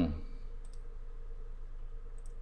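A single faint computer mouse click, about a third of the way in, over a steady low electrical hum.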